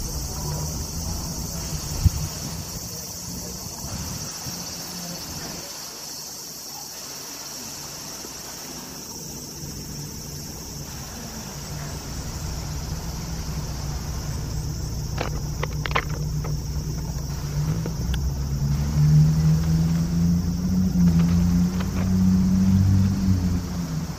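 A steady, high-pitched chorus of cicadas in the trees, with a low engine hum growing louder in the second half.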